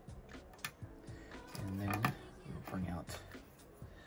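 Small clicks and rustling of plastic action-figure accessories being handled and picked up, over quiet background music, with a couple of brief wordless vocal sounds.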